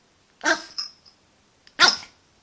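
Yorkshire terrier barking twice, two short barks a little over a second apart, the second the louder.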